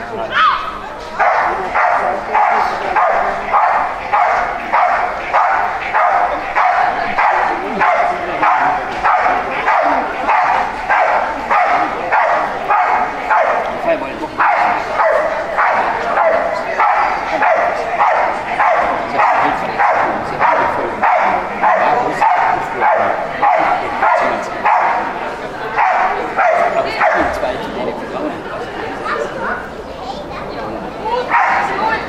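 Belgian Malinois barking steadily and rhythmically at a protection helper, about two to three barks a second. There is a brief pause midway, and the barking thins out near the end.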